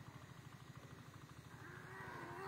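Near silence with a faint, steady low pulsing. About one and a half seconds in, a faint, wavering, drawn-out call begins.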